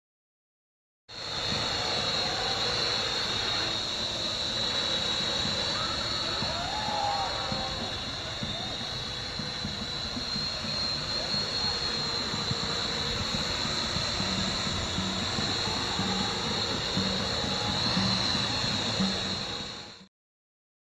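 Parrot AR.Drone quadcopter flying, its four electric motors and propellers making a steady high-pitched whine over a whirring rush. The sound cuts in about a second in and stops abruptly.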